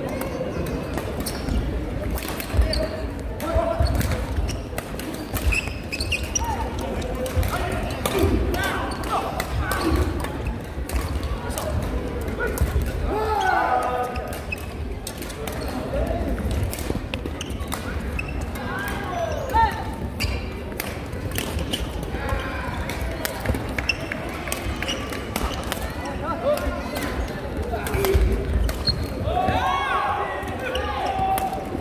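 Badminton rallies on an indoor wooden court: sharp racket strikes on the shuttlecock, thuds of footwork and short squeaks of court shoes on the floor, over a steady murmur of voices in a large hall.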